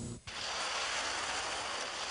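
A brief drop in sound, then a steady, even hiss of outdoor background noise.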